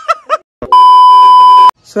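Electronic beep sound effect: one steady high tone held for about a second, starting and stopping abruptly.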